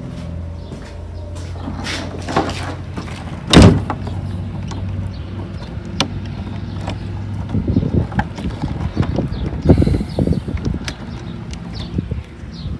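An old wooden door banging shut with one loud thud about three and a half seconds in, over a low steady hum. From a little past halfway come irregular footsteps crunching on sandy ground.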